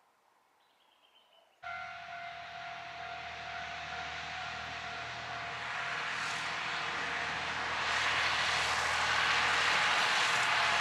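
A two-car diesel railcar of the Hitachinaka Kaihin Railway running past along the line: a low engine hum and rumble of wheels on rails, with a steady whine, starting abruptly under two seconds in and growing steadily louder toward the end.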